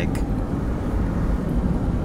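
Steady engine and tyre noise of a car driving along a paved road, heard from inside the cabin.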